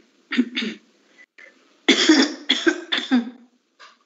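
A person coughing in a fit: two quick coughs near the start, then three harder coughs about two seconds in.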